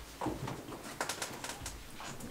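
Slow footsteps and the taps of a walking cane on a wooden floor, with a brief low vocal sound about a quarter second in.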